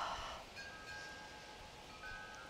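Faint chime tones, several pitches ringing together and fading, with a second set struck near the end. A breathy hiss fades out at the very start.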